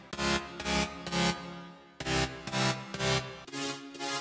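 Sylenth1 software synthesizer playing a soloed chord layer of a big-room/progressive house track: short chord stabs, three about half a second apart, the group repeating two seconds later. About three and a half seconds in, a different, thinner chord layer with less bass takes over.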